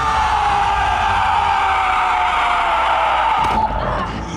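A man's long, sustained yell, slowly falling in pitch, that breaks off about three and a half seconds in.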